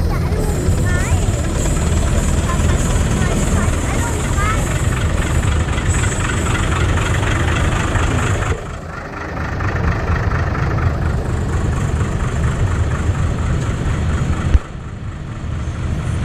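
Diesel tractor engines running as light-decorated tractors drive past close by, with voices mixed in. The sound drops briefly twice, about halfway through and near the end.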